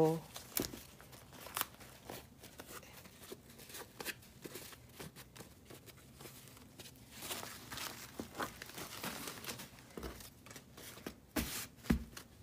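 Cotton Ankara fabric rustling and crinkling as it is handled, with brief tearing as a cut-out flower motif is pulled free of the cloth. Two sharp knocks near the end.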